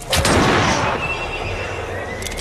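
A horse whinnying once, loudest at the start and fading within about a second, followed by a thin, high, steady tone.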